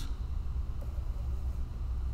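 Steady low room rumble with faint hiss and no distinct sounds above it.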